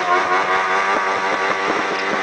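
Suzuki GSX-R1000 inline-four engine held at high revs during a burnout, the rear tyre spinning and smoking. The note stays steady with a slight waver.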